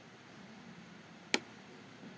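A single sharp computer mouse click a little past the middle, over faint steady room hiss.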